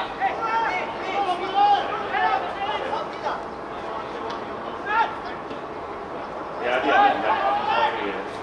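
Men's voices shouting and calling out in two spells, with one short sharp shout in between about five seconds in.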